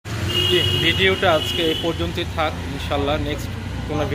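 A man speaking close to the microphone over a steady low background rumble. A high steady tone sounds under his voice for the first two seconds.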